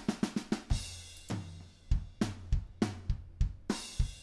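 Sampled acoustic drum kit in Steinberg Groove Agent 5's Acoustic Agent playing a rock groove: kick, snare, hi-hat and cymbals. A quick run of hits opens it, then a steady beat follows.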